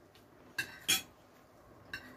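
Metal forks clinking and scraping on ceramic dinner plates, with two sharp ringing clinks about half a second apart near the middle, the second the louder, and a lighter tap near the end.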